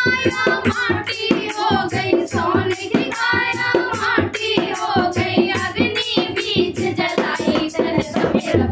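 Women's voices singing a Hindi dehati folk bhajan together, with a steady rhythm of hand claps keeping time.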